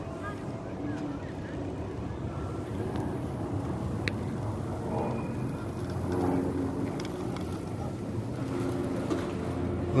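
City street ambience: a steady low traffic rumble with faint voices of passers-by, and a brief high chirp about four seconds in.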